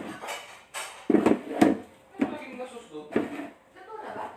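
Indistinct voices in a small room in short separate bursts, with a few sharp clinks and knocks among them.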